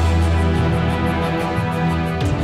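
News-channel intro theme music: a loud, sustained chord with a deep bass under it.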